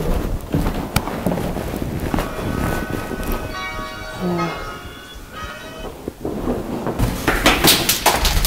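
Dramatic film sound design: a run of heavy hits, with a ringing, bell-like tone in the middle and a dense burst of hits near the end.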